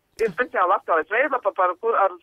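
Speech only: a woman talking over a telephone line, with a brief click just after the start.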